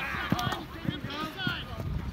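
Shouting voices of players and sideline spectators on a rugby field, heard at a distance over open-air background noise.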